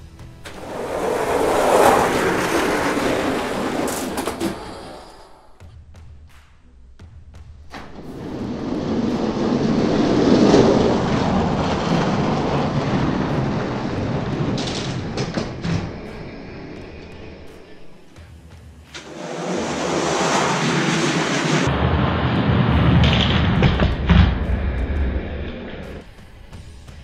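Die-cast toy monster trucks rolling fast down a plastic track, a noisy rolling rumble that swells and fades three times.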